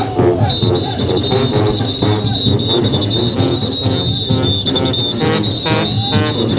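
A Junkanoo parade band playing live: brass horns over a driving percussion beat, with a steady shrill high tone riding above.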